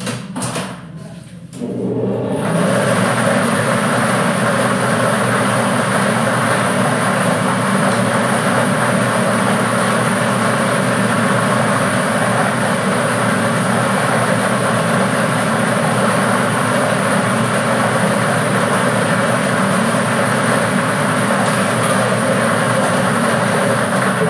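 A few clicks, then from about two seconds in a clear plastic lottery draw machine runs with its numbered plastic balls tumbling and clattering inside the drum: a loud, steady rattle.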